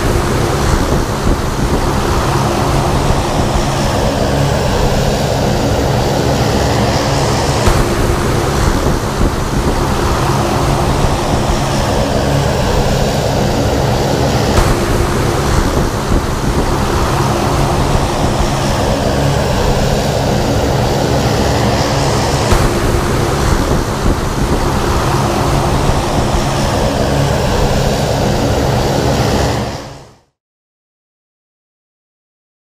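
Single-engine propeller airplane running at steady power: a loud constant engine drone under a rushing wind noise, swelling slowly about every two to three seconds.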